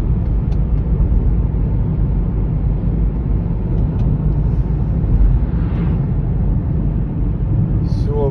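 Steady low road and engine rumble of a car driving at highway speed, heard from inside the cabin.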